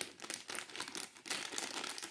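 Clear plastic zip-lock bag holding white plastic wheels being handled and turned over in the hands, the bag crinkling in a run of small irregular crackles.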